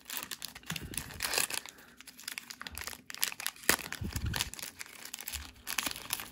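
Plastic wrapper of a trading-card cello pack being torn open and crinkled in the hands: a run of irregular crackles and rustles.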